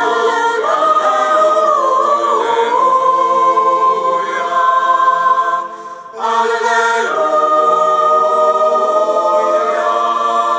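Choir singing unaccompanied liturgical chant, probably the Gospel acclamation, in long held notes that glide between pitches. The singing breaks off briefly about six seconds in and then resumes.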